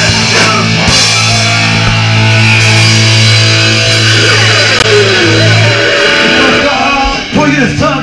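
Live punk rock band playing loud: electric guitars, bass and drums. A long held low chord breaks off about six seconds in, followed by a brief drop and loose, sliding guitar notes.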